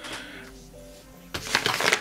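Faint background music, then about two-thirds of the way in a sharp crinkling rustle as a snack packet is grabbed and swung up.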